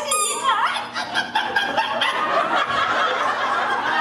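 Audience laughing and snickering, with a quick run of high, squeaky chirps right at the start.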